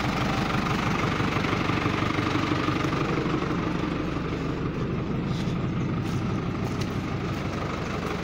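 New Holland tractor's diesel engine idling steadily.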